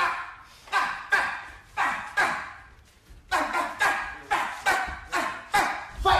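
A dog barking repeatedly, about a dozen sharp barks, each trailing off. There is a pause of about a second after the first five, then the barks come faster.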